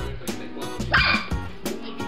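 A Pomeranian puppy barks once, a short high bark about halfway through, over background music with a steady beat.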